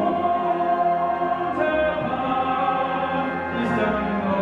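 A male singer holding long notes in an operatic style, accompanied by a symphony orchestra with strings.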